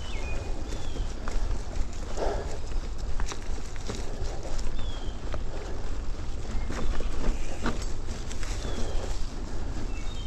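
Mountain bike climbing a dirt singletrack: a steady low rumble of wind and ground noise on the microphone, with irregular clicks and rattles from the bike jolting over the trail. A few brief high chirps come through now and then.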